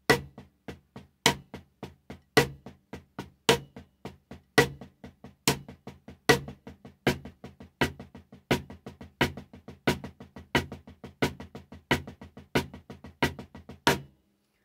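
Wooden drumsticks playing a repeating rudiment sticking on a drum, each cycle one loud accented stroke followed by several softer strokes. The pattern gradually speeds up.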